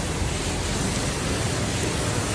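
Steady rushing hiss of a large pan of chicken cooking over an open wood fire, the fire and the hot pan together making an even noise with no distinct crackles.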